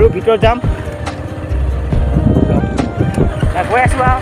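Wind rumbling on the microphone of a moving motorcycle, coming and going in gusts, with voices talking over it.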